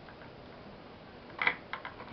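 A quick cluster of sharp clicks about one and a half seconds in, then two lighter clicks just after, as the 24x10 LED par light is switched on.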